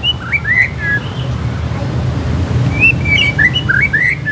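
White-rumped shama singing short whistled phrases of quick notes that slide up and down, one burst at the start and another from about three seconds in, over a low background rumble.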